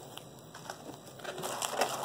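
Paper-towel-wrapped eggs rustling and scraping against a cardboard shipping box as they are pressed snugly into place, with a few light clicks, a little busier in the second second.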